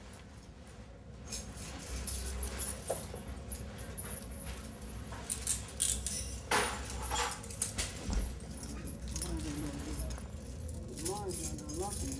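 Steel handcuff and leg-shackle chains jingling and clinking in a run of short metallic clinks as they are unlocked and taken off, with low voices murmuring near the end.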